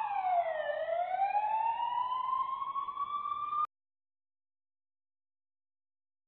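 Police siren sound effect wailing: the tone falls, then climbs slowly, and cuts off suddenly about three and a half seconds in.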